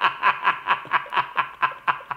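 A man laughing hard in a quick, even run of short "ha" bursts, about four or five a second, each dropping in pitch, dying away toward the end.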